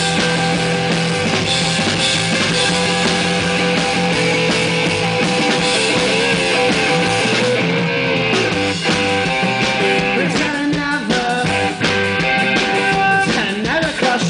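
Live rock band playing loud and steady: a drum kit, electric guitar and bass guitar together.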